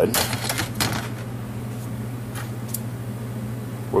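A quick run of clicks and taps of handling noise in the first second, then a couple of faint ticks, over a steady low hum. Speech begins right at the end.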